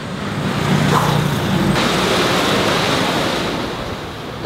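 Road traffic going past on a busy bridge: a wide rushing noise that swells and then slowly fades, with a low engine hum in the first couple of seconds.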